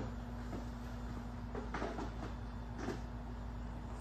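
Quiet room tone: a steady low hum with a few faint, brief soft sounds in the second half.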